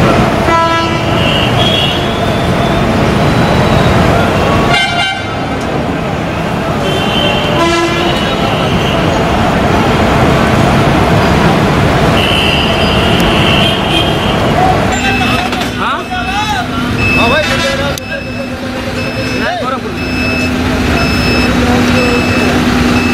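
Bus depot din: bus engines running, with several short horn blasts in the first half. In the last third, a short beep repeats about once a second over a steady low hum.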